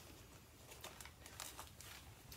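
Near silence: room tone, with a few faint, brief rustles about a second in.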